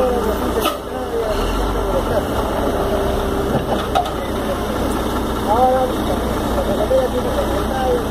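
Diesel engine of a Komatsu WB93R backhoe loader running while its bucket digs muck out of a canal, with a steady whine that fades out about three seconds in. People talk in the background.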